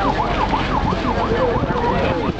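A siren-like electronic tone warbling rapidly up and down, about four sweeps a second, fading out near the end, over a steady low engine hum.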